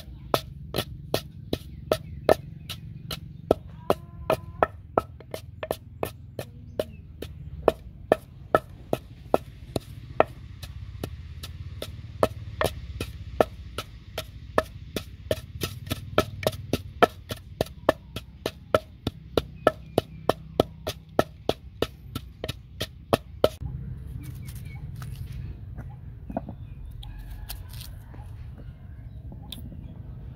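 Wooden pestle pounding a paste in a wooden mortar: steady, even knocks, about three a second, which stop about three-quarters of the way through, leaving only a few faint clicks.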